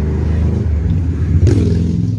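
Motorcycle engine passing on the road right beside, loud, swelling to its peak about a second and a half in.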